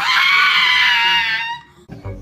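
Pug howling: one long, high, scream-like cry held for about a second and a half, then stopping.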